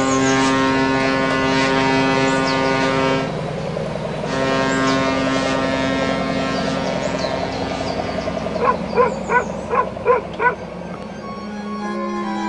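A low horn sounds two long steady blasts, the first about four seconds long. A short gap follows, and the second blast fades out after several seconds. Then a quick run of six short, higher-pitched beeps comes near the end.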